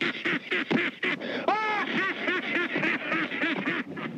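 An old man's wild, cackling laugh: a fast, even run of short hooting 'ha's, about four a second, on an old film soundtrack.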